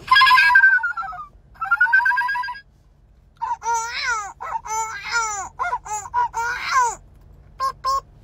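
A young woman's high-pitched, wavering vocalising without clear words: two long held notes in the first two and a half seconds, a short pause, then a run of quick warbling, bending wails, and two short notes near the end.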